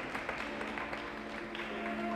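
Light, sparse applause from a small crowd, fading, over quiet background music with long held notes.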